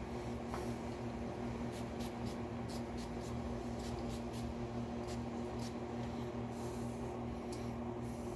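Steady low room hum, like an air conditioner or fan running, with scattered faint brief ticks and rustles.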